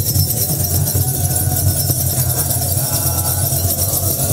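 Many tsenatsil (Ethiopian-Eritrean sistrums) shaken together in a steady jingling rhythm over a low kebero drum, with chanting voices faintly heard now and then.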